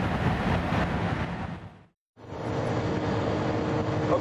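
Engine, wind and tyre noise inside a supercar's cabin at top speed, around 330 km/h. It fades to a moment of silence about two seconds in. The noise then comes back up from inside a Lamborghini Aventador at high speed, with the steady drone of its V12 running under load.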